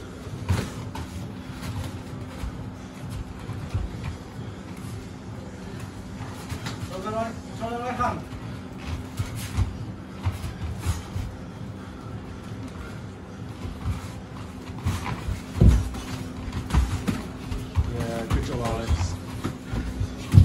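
Irregular thuds of gloved punches and kicks landing, mixed with feet shuffling on foam mats, with a sharper, louder hit about three-quarters of the way through. Short shouts from onlookers come twice, near the middle and near the end.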